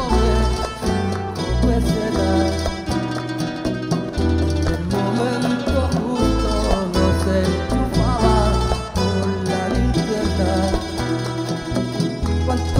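A live band playing Latin-style music: plucked and strummed guitars over hand drums and a deep bass line that changes note every second or so.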